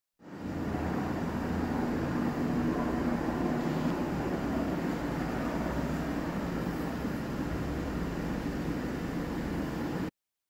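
Electric blower fan of an animated inflatable Christmas decoration running steadily with a low hum.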